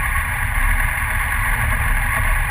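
Motorcycle engine running as the bike pulls away at low speed, heard as a steady rumble mixed with wind noise on the bike-mounted microphone.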